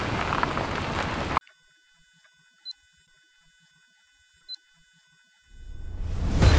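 A loud rushing noise cuts off suddenly about a second and a half in, leaving near silence broken by two short, high electronic beeps. A low rumbling swell then rises near the end.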